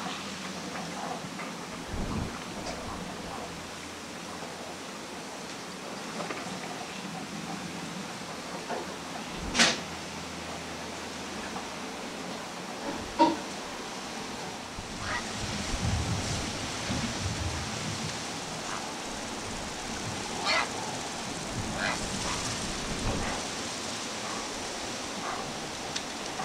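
Steady wind and marsh background hiss with a few short, faint bird calls in the second half, and two sharp knocks, the loudest sounds, about ten and thirteen seconds in.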